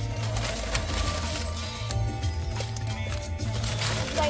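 Music with a strong steady bass and a regular beat, playing over the car's stereo from a phone over Bluetooth.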